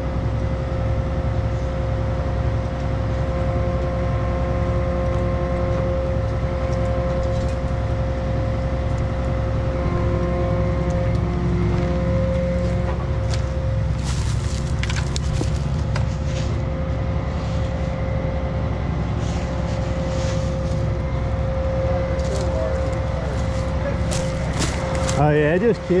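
Grapple saw truck's engine running steadily under crane work, with a constant whine over a low, pulsing rumble. Light clicks and rustles come in over the second half.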